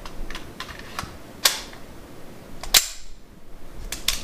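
Metallic clicks and clacks of a SIG Sauer P226 pistol being handled: its magazine worked into the grip and the action operated. A few light clicks, then two sharp clacks about a second and a half in and near three seconds, and one more click near the end.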